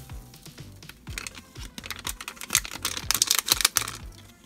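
Granular fizz potion powder poured from a foil packet into a plastic toy cauldron, making a run of quick small clicks and ticks that grows thickest near the end.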